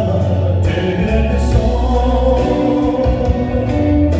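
A man singing live into a handheld microphone over amplified instrumental accompaniment with a steady bass line.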